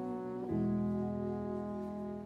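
Jazz band with piano, double bass and horns holding a sustained chord between vocal lines, moving to a new chord with a low bass note about half a second in.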